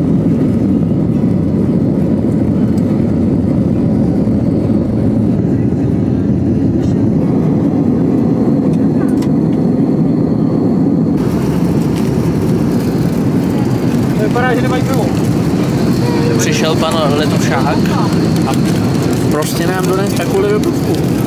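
Steady, loud low rumble of a jet airliner's engines and rushing air, heard from inside the cabin as the plane climbs after takeoff. About eleven seconds in the sound shifts abruptly to cruising cabin noise, with faint voices over it in the last few seconds.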